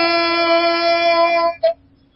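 A football radio commentator's long, drawn-out goal shout: one steady held vowel at a high pitch, cut off about a second and a half in.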